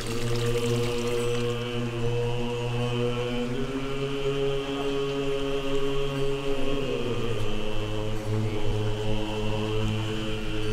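Background music of a deep, droning chanted mantra: long held low notes that shift to a new pitch about seven seconds in.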